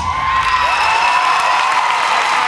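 Audience cheering with high-pitched shouts and applause as the routine's music ends about half a second in.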